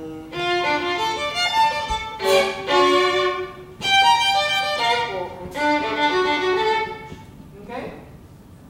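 Acoustic violin played solo, bowed notes in a few short phrases with brief breaks, stopping shortly before a voice comes in near the end.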